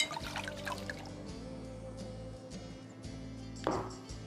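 Background music with sustained tones over wine being poured from a glass bottle into a wine glass, with small clinks and splashes in the first second. Near the end comes a short knock as the bottle is set down on the table.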